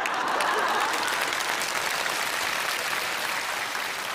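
Studio audience applauding: a steady wash of clapping that eases off slightly toward the end.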